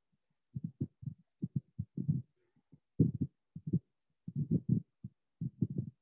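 Dull, low taps and knocks, a few a second in irregular clusters, from a stylus writing on a tablet close to the microphone.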